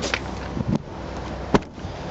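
Hatchback tailgate of a Honda Jazz being pulled down and shut, ending in one sharp slam about one and a half seconds in, after a few lighter clicks and a low knock as it is handled.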